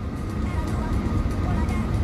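Low rumble of a car heard from inside the cabin, engine and road noise, growing slightly louder over the two seconds.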